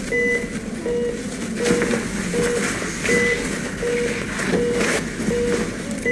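Bedside patient monitor beeping steadily, a short mid-pitched beep a little faster than once a second, in time with the patient's pulse. A higher beep sounds about every three seconds.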